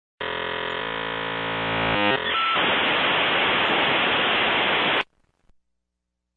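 An electronic buzz that holds steady for about two seconds and then steps through a few quick tones, followed by a loud hiss of static that cuts off suddenly about five seconds in.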